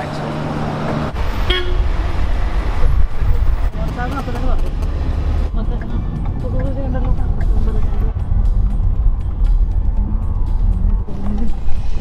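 Road and engine rumble heard from inside a moving car, with vehicle horns tooting at times.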